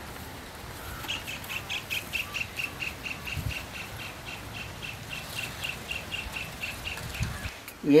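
A bird calling an even series of short, high chirps, about five a second, starting about a second in.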